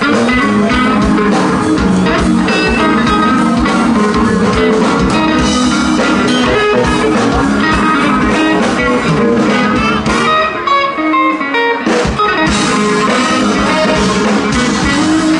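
Live blues band playing through an outdoor PA, with guitar over bass and drums. About ten seconds in, the drums and low end drop out briefly, then the full band comes back in.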